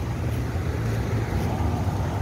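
Steady low rumble of city street traffic.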